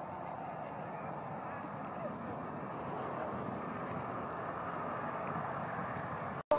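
Steam venting from a fumarole: a steady rushing sound that grows slightly louder over the few seconds.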